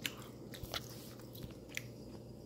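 Faint mouth sounds of someone chewing a tender piece of beef in curry sauce, with a few soft clicks.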